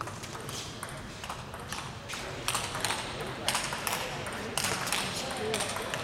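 Table tennis rally: the ball clicking sharply off the bats and table, about two hits a second, louder from about halfway through as the players trade strokes from farther back.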